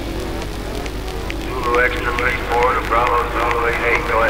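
Steady low bass of a techno DJ set in a club, with a voice coming in over it about a second and a half in.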